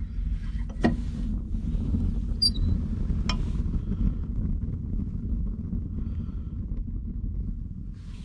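Fire burning in a small wood stove fed with shredded branch chips, heard with the stove door open as a steady low rumble. Two sharp clicks cut through it, one about a second in and one a little past three seconds.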